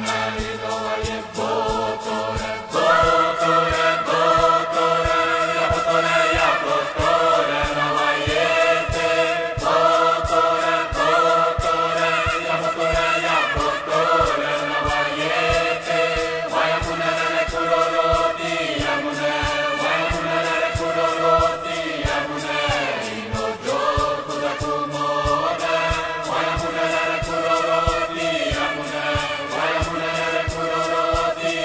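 Choral music: several voices singing long, layered chanted phrases over a fast, steady percussion beat, in an arrangement of an indigenous Brazilian song.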